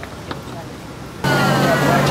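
Quiet outdoor ambience with a few faint clicks, then, just over a second in, an abrupt cut to louder sound: a steady low hum with people talking over it.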